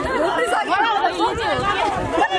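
Several people's voices talking over one another without pause.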